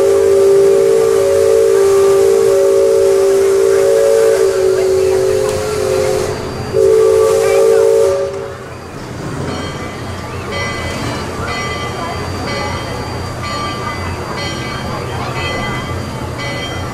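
Steam whistle of the Liberty Belle paddle-wheel riverboat blowing a long, steady chord of several tones over a hiss of steam. It breaks off about six seconds in, then gives a short second blast that stops about eight and a half seconds in.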